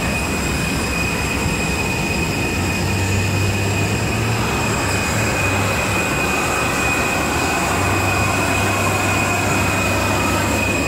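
Jet airliner turbine noise on the apron: a steady, loud roar with a high, steady whine over it.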